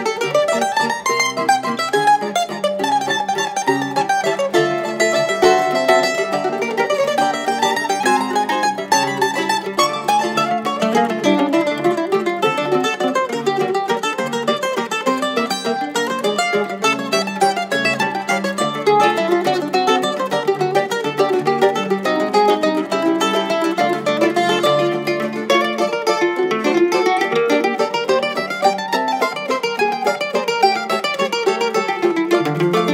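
Trio of Brazilian mandolins (bandolins), one of them a 10-string bandolim, playing a virtuosic waltz. Quick plucked melody lines run unbroken over a lower plucked accompaniment.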